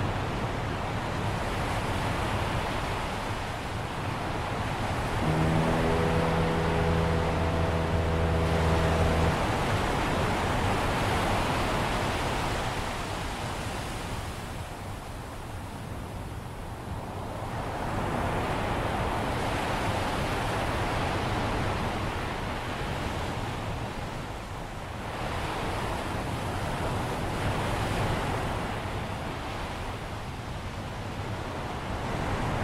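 Ocean waves washing in and drawing back in slow swells. About five seconds in comes a single fog horn blast: a steady low note held for about four seconds, with a deeper tone joining partway through.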